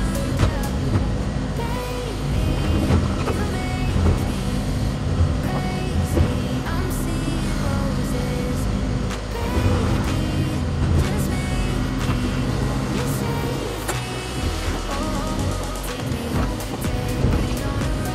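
Excavator engine running under load while concrete blocks from a retaining wall being demolished crash and clatter down in repeated sharp knocks, over background music.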